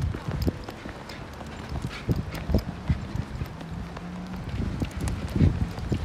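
Soft, irregular low thumps and rustling from a handheld phone being carried through grass, with a faint steady low hum in the middle seconds.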